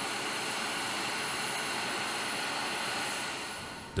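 Steady jet-engine noise on a flight line: an even rush with a faint high whine, easing off slightly near the end.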